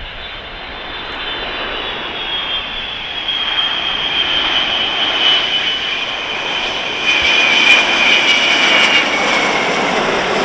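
Boeing KC-135R Stratotanker's four CFM56 turbofans on landing approach, growing steadily louder as the aircraft nears. A high fan whine rides over the roar and drops slightly in pitch near the end as the aircraft passes.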